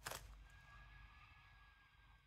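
Near silence, with a brief faint rustle of a plastic crisp packet at the very start.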